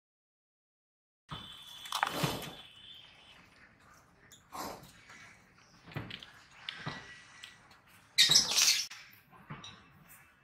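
Stainless steel plate being knocked and scraped as leftover rice is tipped off it onto a sheet of newspaper: several short knocks, then a louder scraping rustle near the end.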